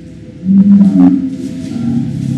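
Background music with a steady drone; about half a second in, a loud low shout lasting about half a second steps up in pitch, like a martial-arts kiai at the finish of a paired bokken technique.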